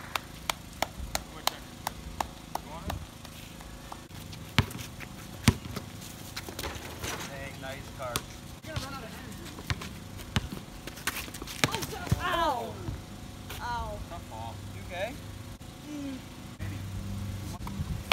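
A basketball dribbled on an asphalt driveway: quick, even bounces about two to three a second at first, then scattered single bounces, the loudest about five and a half seconds in. Players' voices are heard faintly now and then.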